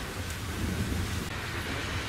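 Wind rumbling on an outdoor microphone, a steady low rumble with faint voices under it.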